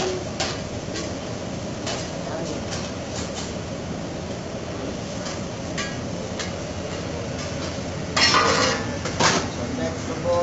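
Metal spatula clicking and scraping on a steel teppanyaki griddle in scattered light strokes, over steady restaurant background noise, with a louder burst of noise about eight seconds in.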